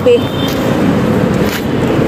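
Steady road traffic noise from a busy multi-lane city road.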